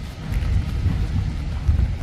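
Wind buffeting a phone's microphone outdoors: a loud, uneven low rumble with a faint hiss above it.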